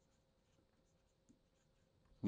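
Near silence with faint light ticks of a stylus writing on a tablet screen.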